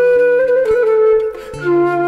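Silver transverse flute playing a slow Turkish folk-song melody of held notes over a low steady accompaniment. The flute breaks briefly for a breath about one and a half seconds in, then comes back on a lower note.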